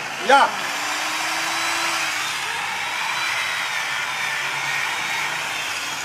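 Handheld electric angle grinder switched on and running free with no load: it spins up about half a second in, then runs steadily with a high motor whine.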